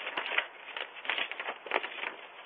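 Paper envelope being torn open by hand and the letter pulled out: a run of irregular rustling and tearing crackles.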